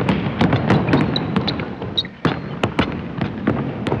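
Logo outro sound effect: a dense noisy crackle with irregular sharp snaps and knocks, and a few brief high-pitched squeaks, starting suddenly as the logo appears.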